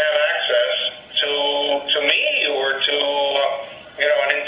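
A man's voice speaking over a video-conference link. It sounds thin, like a telephone, with nothing above the middle of the range, and is heavily processed by the call's compression. It drops away just before the end.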